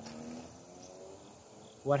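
Crickets singing steadily, a thin high trill that carries on under a pause in speech.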